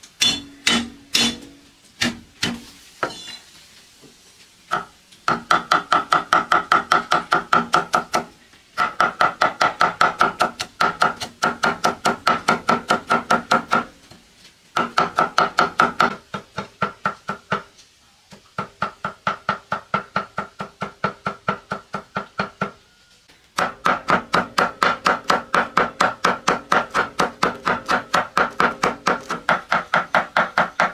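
Cleaver chopping spring onions on a thick wooden chopping block: a few separate cuts at first, then long runs of fast, even chops broken by short pauses.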